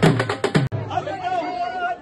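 Rapid drumming on strap-hung drums that stops suddenly under a second in, followed by a crowd of people chattering and calling out.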